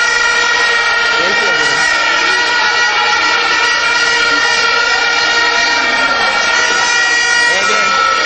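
A loud continuous drone of several steady tones sounding together, like horns held without a break, with a faint voice underneath.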